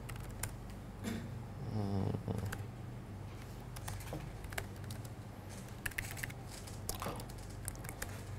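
Laptop keyboard keys tapped in irregular clicks as shell commands are typed, over a low steady electrical hum.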